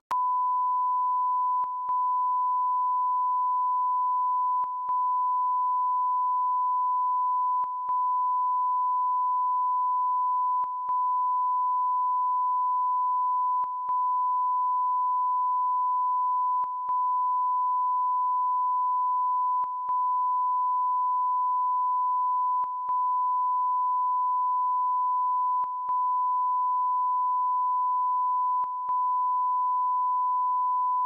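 Steady electronic test tone: a single unchanging high beep, dipping briefly about every three seconds, as played under a broadcast end slate.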